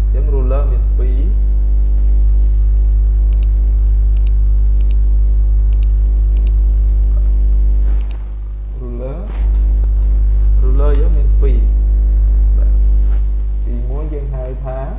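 Loud steady electrical mains hum on the recording, a low buzz with many overtones, which dips for about a second and a half about eight seconds in. Brief bits of a voice come in a few times over it, and there are a few faint sharp clicks, some in pairs.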